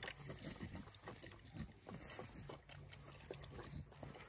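Faint, scattered short grunts from a small black piglet feeding close by.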